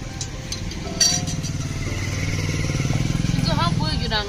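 An engine running close by: a low, evenly pulsing sound that starts about a second in and grows louder toward the end.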